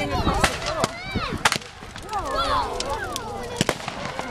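Fireworks going off: a series of sharp bangs, with a close pair about a second and a half in and another pair near the end.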